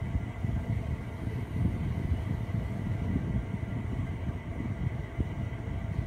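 Steady low rumble of room background noise, with a faint steady high-pitched tone running through it.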